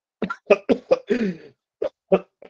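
A man coughing in a quick run of about five coughs, the last one drawn out, then another cough near the end.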